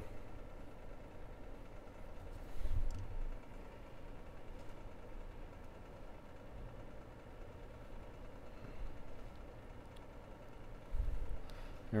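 Quiet, steady background hum with two soft, low thumps, about three seconds in and about a second before the end.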